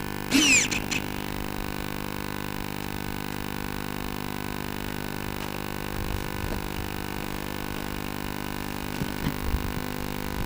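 Steady electrical hum with many evenly spaced overtones, picked up by the onboard camera of an FPV model plane sitting still on the runway, with a brief falling whine in the first second.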